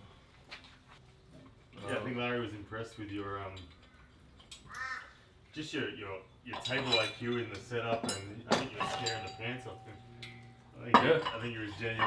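Men talking off-mic in short stretches, with a few sharp metallic clinks mixed in near the middle.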